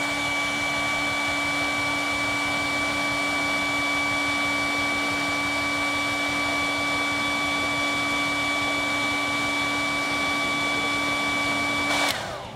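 Hair dryer blowing hot air onto action figures' plastic kick pads to soften them, running steadily with a high whine over the rush of air. It switches off at the very end, its pitch falling as it winds down.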